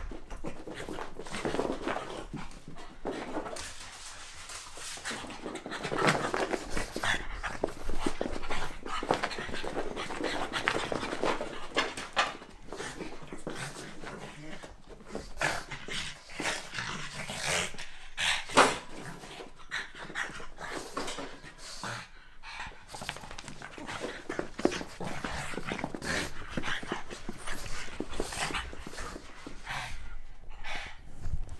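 Pugs panting hard and scuffling as they play-fight, with irregular snorts and quick paw scrabbling, and one louder knock about two-thirds of the way through.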